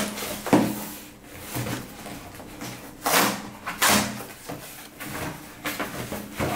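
Cardboard shipping box being handled and its flaps pulled open, with several short scrapes and rustles of cardboard.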